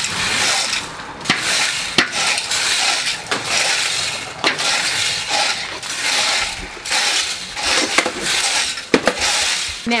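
Metal rakes scraping across compacted dirt and straw in repeated strokes, with a few sharp clicks of the steel tines.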